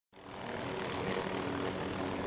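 MD 530F light helicopter running with its rotor turning as it lifts off into a low hover: a steady engine and rotor noise with a low hum, fading in at the start.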